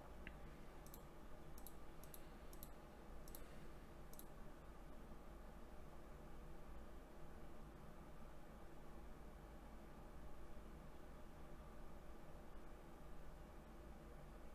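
Near silence: room tone with a steady low hum, and about six faint sharp clicks spread over the first four seconds.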